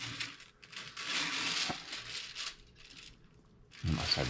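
Handling noise as a clay figure on its wooden stand is turned and shifted about on a wooden workbench: scraping and rustling in two stretches, the second longer, with one sharp click about halfway through.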